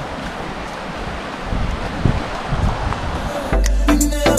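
Steady rushing noise of wind on the microphone and the flowing stream beside the path. About three and a half seconds in, music with a heavy bass and a drum beat starts suddenly.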